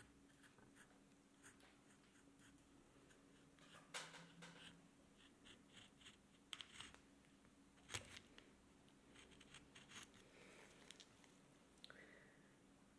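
Faint scraping cuts of a small carving gouge pushed through green wood, cutting decorative grooves along a spoon handle: several short strokes, the loudest about four and eight seconds in, over a faint steady hum.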